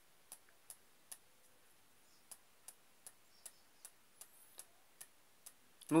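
Faint, sharp clicks at an even pace, about two or three a second, with a pause of about a second between the first few and the rest.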